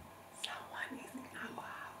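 Quiet whispered speech, a few hushed words, over faint room tone.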